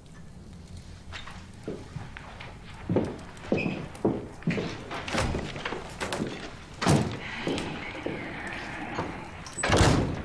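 Footsteps and a room door being opened and shut, heard as a series of knocks and thumps; the loudest come about seven seconds in and just before the end.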